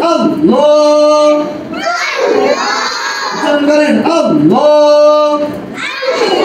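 A class of children chanting in unison, reciting Arabic letter spellings and vowel marks in a sing-song drill, in two long phrases with held notes.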